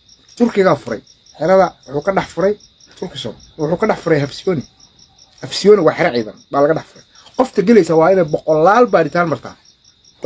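A man talking in short bursts of speech over a constant high-pitched chirring of crickets.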